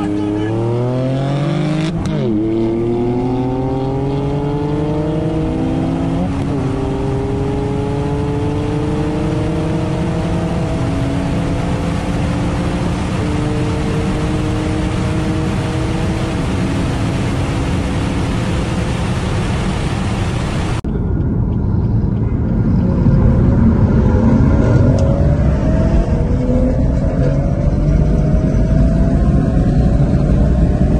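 Car engine under full throttle, heard from inside the cabin: its pitch climbs through the gears, with quick upshifts about two and six seconds in, then a long slow rise. About twenty seconds in the sound cuts to a different recording of a car accelerating on a highway, with louder engine and road noise rising in pitch.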